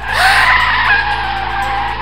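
Car tyres screeching in a long skid, starting suddenly, rising in pitch at first and then holding a steady high screech, over background music.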